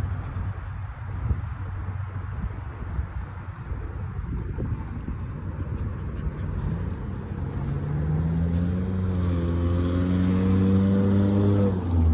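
A motor vehicle's engine running with a steady low hum. About seven seconds in it rises in pitch and grows louder, then holds at the higher pitch near the end.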